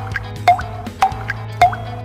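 The rhythmic tick-tock auditory cue of a GYENNO SKYWALK Bold walking aid for Parkinson's freezing of gait, played through its earphone: short, evenly spaced pitched ticks just under two a second, alternating between a slightly higher and a slightly lower pitch (tick, tock), to pace the wearer's steps. Soft background music runs underneath.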